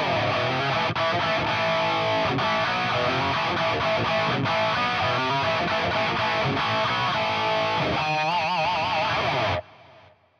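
High-gain distorted electric guitar played dry through a Line 6 Helix preset: a Revv Generator amp model with a Screamer overdrive in front. It plays a dense, fast-picked metal riff, then ends on held notes with wide vibrato about eight seconds in, and cuts off abruptly.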